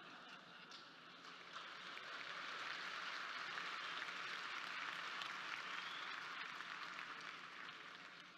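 Audience applauding, swelling over the first couple of seconds and dying away near the end.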